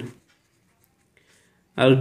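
Faint scratching of a pen writing on paper in a short quiet gap in speech. The speech trails off just after the start and comes back near the end.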